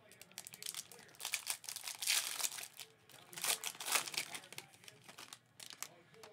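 Shiny foil wrapper of a Panini Prizm World Cup trading-card pack being opened by hand, crinkling and crackling in irregular bursts, loudest in the middle.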